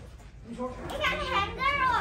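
A young child's voice, starting about half a second in after a brief quiet moment.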